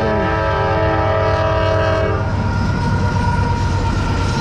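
Diesel freight locomotive's horn sounding one long chord that cuts off about two seconds in, over the steady low rumble of the freight train rolling past.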